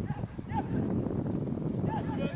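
Wind buffeting the microphone in a steady low rumble, with two short high calls, one about half a second in and one near the end.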